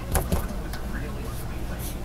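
Paintbrush scrubbing thick dark paint onto canvas in short scratchy strokes, over a steady low electrical hum.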